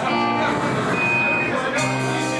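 Live band playing loud, with electric guitars holding sustained chords and a single high held note about halfway through. Cymbal crashes come in near the end.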